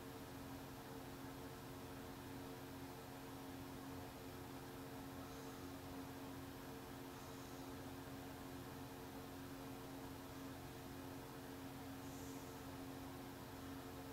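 Quiet room tone: a faint steady hiss with a low, even electrical hum.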